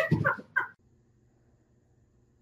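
Three short, quick pitched vocal bursts in the first moment, then near silence.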